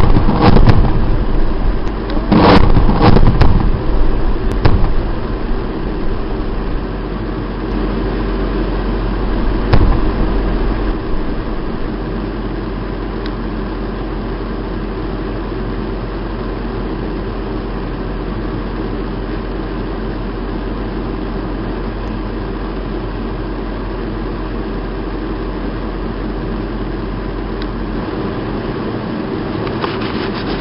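Several heavy blasts from bomb explosions in the first few seconds, one more near ten seconds in. Then the steady drone of an armoured military vehicle's engine running.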